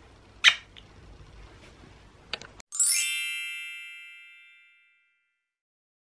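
A loud lip-smack kiss ("muah") about half a second in, followed by two faint clicks. Then a bright chime sound effect rings out and fades over about two seconds.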